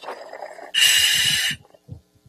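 Scuba diver breathing through the demand regulator of a full-face mask, picked up by the mask's communications microphone: a loud hiss of air lasting under a second in the middle, with low gurgling around it.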